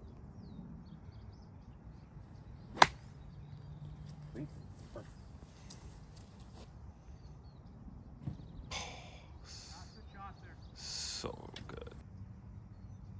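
A golf club striking a ball: one sharp click about three seconds in, with birds chirping faintly in the background.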